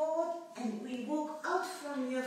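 A high-pitched voice in a string of short phrases, like a woman talking or singing.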